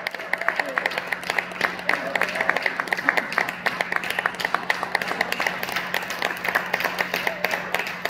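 Applause from a small seated audience: many hands clapping in an irregular patter, with a few voices over it now and then.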